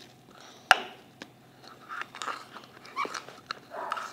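Very sticky slime being worked with the fingers and pulled from a small plastic jar: a run of small wet clicks and squelches, with one sharp click under a second in.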